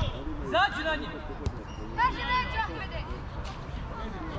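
High-pitched shouts from young footballers calling to each other, with one sharp ball kick about one and a half seconds in.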